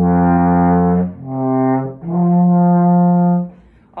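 Alphorn in F playing three long, steady notes, each higher than the last, climbing the lowest steps of its natural harmonic series; the pitch changes come from the lips and breath alone, with no valves or holes. The first and last notes are held about a second and a half, and the middle one is shorter, with brief breaks between them.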